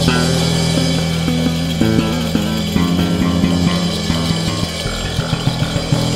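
Instrumental ethno-jazz band playing an Armenian folk dance tune, with an electric bass guitar (Fender Jazz Bass) carrying a moving melodic line, and a run of quick, evenly spaced accents near the end.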